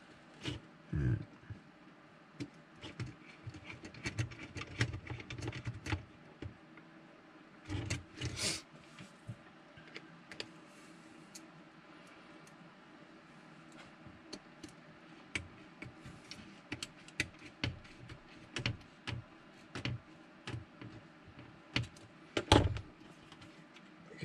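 Scattered small clicks and taps of hands handling the plastic parts and small screws of an OO-gauge model railway coach, with a louder knock near the end. A faint steady hum runs underneath.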